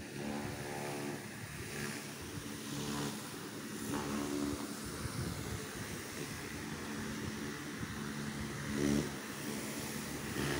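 A motor vehicle's engine running close by, its pitch holding fairly steady and coming and going over a background of outdoor noise.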